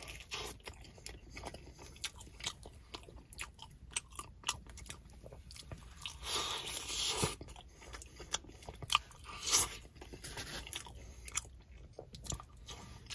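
Close-up biting and chewing of a hot pepperoni pizza slice, the crust crunching in many small clicks. A second bite comes about six seconds in.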